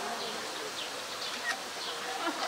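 A flying insect buzzing, with a few short, faint high chirps.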